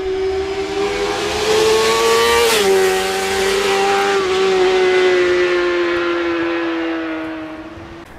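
Sound effect of a high-revving engine passing by: a steady engine note that climbs slightly, drops sharply with a rush of air about two and a half seconds in as it goes past, then slowly sinks and fades away near the end.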